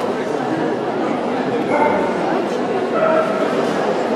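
Background chatter of a crowd in a large hall, with dogs whining and yipping, including two short high whines about two and three seconds in.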